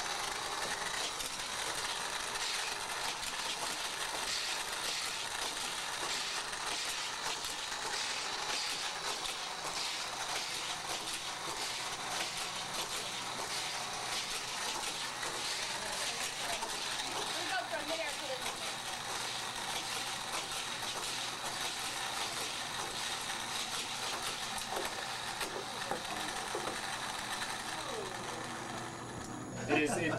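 Motorized Hot Wheels track booster running steadily with a whir, toy cars rattling fast through the plastic track with a dense run of small ticks, stopping shortly before the end.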